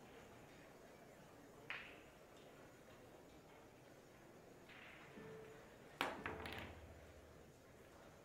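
A pool shot with Predator Arcos II resin balls: the cue tip strikes the cue ball sharply about six seconds in, followed within half a second by lighter clicks of balls colliding and a brief rumble of balls rolling on the cloth. There is a single sharp click about two seconds in. The rest is near silence.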